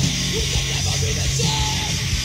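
Hardcore punk music: distorted electric guitar, bass and drums playing loud and fast, with shouted vocals over them.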